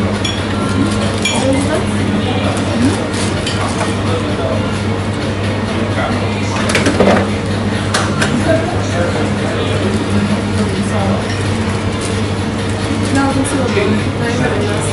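Busy café bar ambience: a steady low hum under indistinct chatter, with clinks of glasses and dishes, sharpest about seven to eight seconds in.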